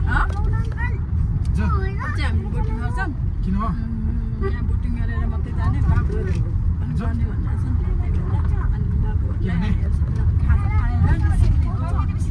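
Steady low road and engine rumble inside a moving car's cabin, with voices talking intermittently over it.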